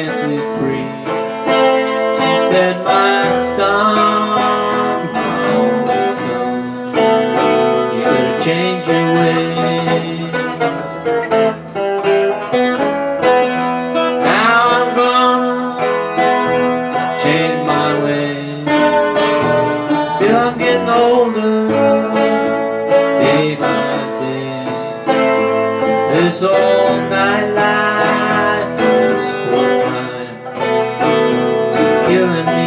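Acoustic guitars playing a blues song live, strummed and picked, with some gliding notes.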